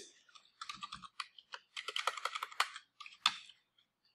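Typing on a computer keyboard: a quick run of keystrokes, then one louder key strike a little after three seconds in.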